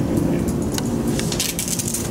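Steady low room hum with a single crackle, then a quick run of rustling crackles close to the microphone in the second half, as of papers or the microphone being handled.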